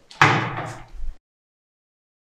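A single sudden loud slam with a short rumbling tail, then the sound track cuts to dead silence just over a second in.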